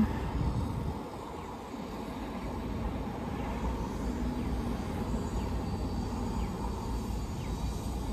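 Steady low rumble and hiss of a car's interior while it sits parked, with no distinct events.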